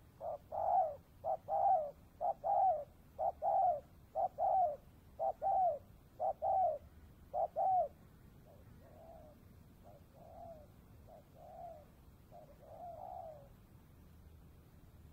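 Spotted dove cooing: a run of eight loud two-part coos, about one a second, followed by several softer coos.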